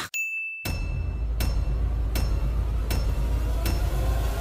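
A single high bell ding, the sin-counter sound effect marking one more sin, cut short after about half a second. Then music with a heavy bass and a steady beat about every three-quarters of a second.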